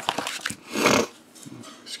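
A man's single sudden, forceful burst of breath about a second in, an involuntary outburst for which he then excuses himself.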